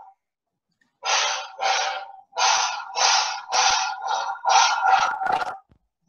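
Rhythmic hissing bursts, about two a second, picked up by a video-call participant's open microphone. They start about a second in and stop shortly before the end.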